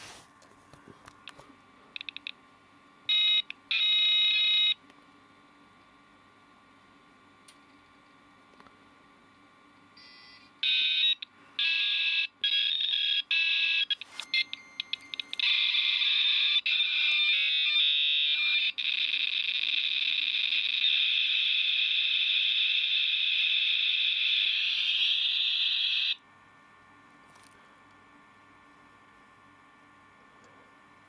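Dial-up modem connecting through its built-in speaker: short dialing tones a few seconds in, then after a pause the answering modem's tones and a handshake of shifting beeps and chirps. This settles into a long, loud, steady hiss of line training and cuts off suddenly a few seconds before the end. This is the handshake of a 33.6 kbps link.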